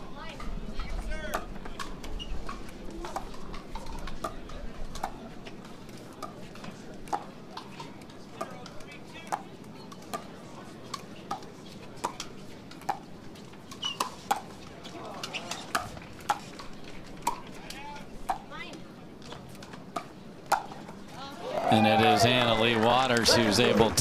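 Pickleball rally: a long irregular series of sharp pops as paddles strike the plastic ball back and forth. About two seconds before the end, a loud voice cuts in over it.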